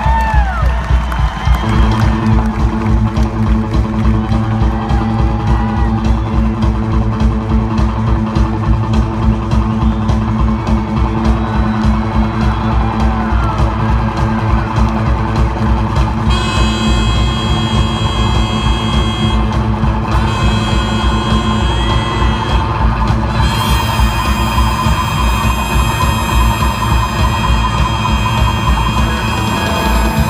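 Live rockabilly trio of drums, slapped upright bass and electric guitar playing an instrumental passage with a steady driving beat, with a few whoops from the crowd. Long held high notes join the music a little past the middle.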